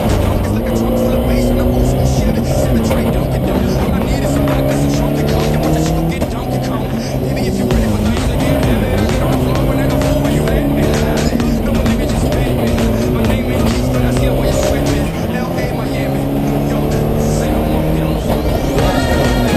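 Race car engine heard from inside the cockpit, revving up and dropping back again and again as the driver works through the gears. A music track plays over it.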